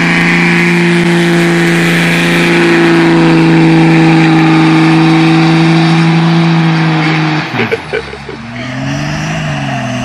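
Cummins turbo-diesel in a Dodge Ram pickup held at steady high revs during a burnout. About seven seconds in, the steady note cuts off with a few sharp pops. A lower engine note follows, rising and falling.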